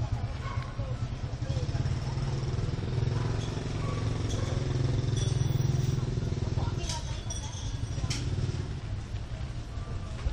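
Steady low rumble of a running engine, swelling a little in the middle, with two sharp knocks near the end.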